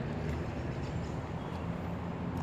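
Steady low background rumble with a faint hiss over it, the ambient drone of a park beside a river and roads.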